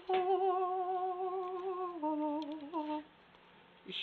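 A person humming a long held note with vibrato, which drops to a lower note about two seconds in and stops about a second later.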